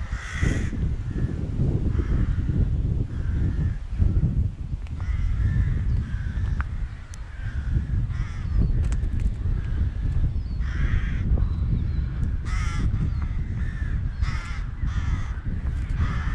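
Wind buffeting the microphone with a heavy rumble, while crows caw again and again through it.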